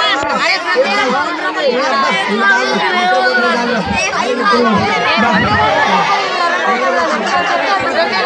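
Many young voices talking and calling out over one another in loud, continuous crowd chatter.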